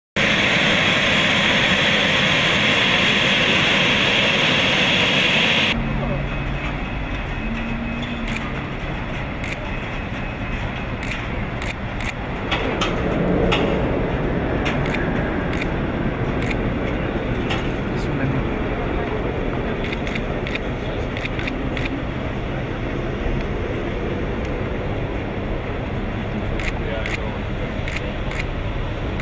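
Steady aircraft engine noise on an airport apron: a loud hiss for about the first six seconds, then, after a cut, a lower steady rumble. Scattered camera shutter clicks and murmured voices run through the rumble.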